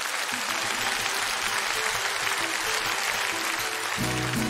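Audience applauding over the soft opening of backing music, a few held notes under the clapping.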